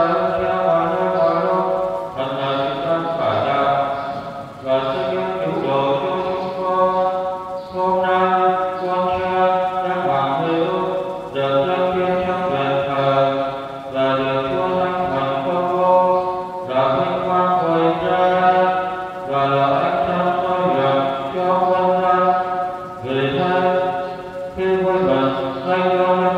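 A Catholic priest chanting a prayer of the Mass in Vietnamese: one male voice singing long held notes in phrases of a few seconds, with short breaks between them.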